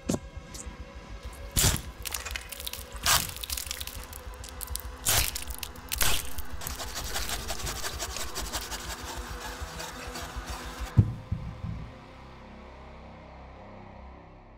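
Horror film soundtrack: sharp, wooden-sounding knocks and cracks over a dark score, spaced a second or two apart at first, then coming thick and fast, with the loudest hit about eleven seconds in. After it only a low drone is left.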